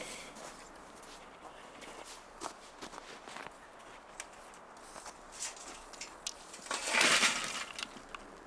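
Scattered light clinks and scrapes of grill gear being handled, then, about seven seconds in, a short rattling rush as lit charcoal is tipped from a chimney starter into the grill.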